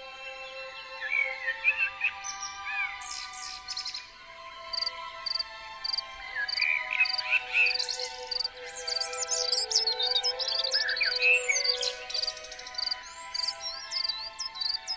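Birds chirping and singing over slow, soft background music of held chords. From about four seconds in, a short high chirp also repeats steadily, about twice a second.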